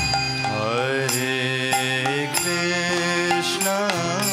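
Devotional kirtan: a male voice sings a chant that glides in pitch, over a steady harmonium drone, with acoustic guitar and regular percussion strikes from a mridanga drum.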